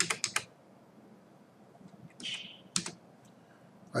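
Computer keyboard keys tapped in a quick run of four or five clicks right at the start, then a short soft rustle a little after two seconds and two or three more clicks shortly before three seconds in.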